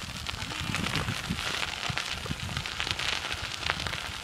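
Wind buffeting the microphone of a hand-held camera on a moving bicycle: a steady rough rumble with many small crackles running through it.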